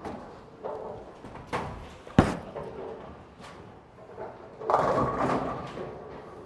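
A bowling ball lands on the lane with a sharp thud about two seconds in and rolls down the lane. About two and a half seconds later it crashes into the pins in a loud clatter that dies away within a second.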